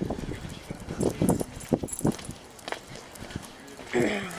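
Footsteps on a concrete sidewalk while walking a small dog on a leash: a string of irregular short knocks and scuffs.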